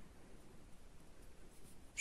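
Faint scratchy rustle of yarn being worked on metal knitting needles, very quiet.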